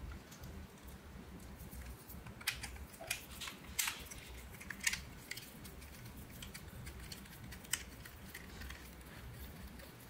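Faint, scattered small clicks and ticks of handling as a GoPro's mounting fingers sit in a mini tripod's mount and its long thumbscrew is turned to fasten the camera; most of the clicks fall between about two and five seconds in.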